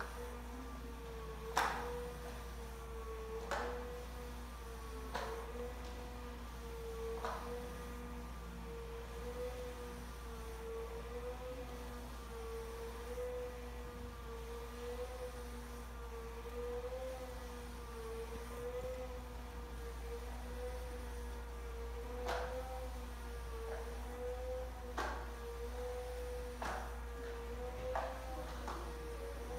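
Tubular motor of a motorised zebra roller blind running as the blind lowers: a steady hum with a slow, regular waver in pitch. A few light clicks come in the first seconds and again near the end.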